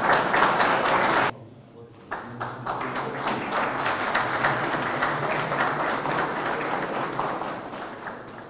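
Audience applauding. The clapping breaks off suddenly just over a second in, starts again about two seconds in, and slowly fades toward the end.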